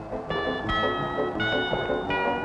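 Instrumental background music: a melody of held notes that change about every half second over a busier lower accompaniment.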